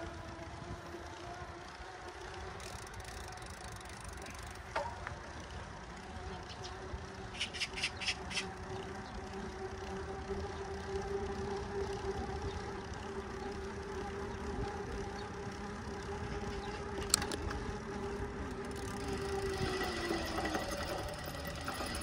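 Road bike rolling along an asphalt country road while being ridden: a steady hum and a haze of wind and tyre noise, the hum sliding down in pitch near the end. A short run of ticks comes about seven seconds in, and a single click later.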